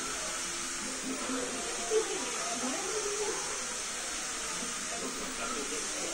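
Faint, indistinct voices over a steady hiss, with one short louder sound about two seconds in.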